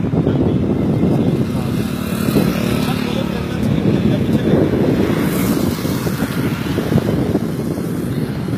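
Steady low rumble of wind buffeting the phone's microphone, mixed with road traffic running by.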